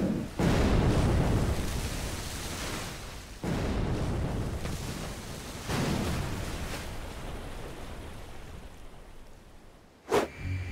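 Three heavy booms of 76 mm naval gunfire, about two to three seconds apart, each rumbling away slowly before the next.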